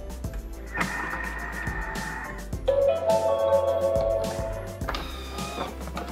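Background music, with held melodic notes that change every second or two.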